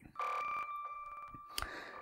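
A soft electronic transition sound effect for an on-screen title card: a steady, ringtone-like tone that starts just after the speech stops. A higher tone drops out after about a second and a half while the lower one carries on, with faint ticks underneath.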